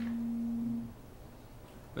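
A steady low pure tone, a single unwavering pitch, that cuts off suddenly about a second in, leaving quiet room tone.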